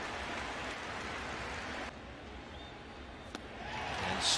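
Ballpark crowd noise, a steady hiss-like din that drops a little about halfway through. Near the end a single sharp pop sounds as the pitch is swung through and caught: the baseball smacking into the catcher's mitt.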